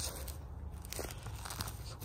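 Footsteps crunching on dry grass and leaf litter, a few faint crackles under a low rustle.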